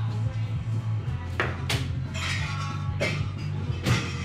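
Background music with a steady bass line. Over it come several sharp clinks and knocks of glasses and bottles being handled behind a bar, the loudest near the end.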